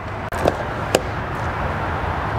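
Steady outdoor background noise with a faint low hum, broken by two short clicks about half a second and one second in.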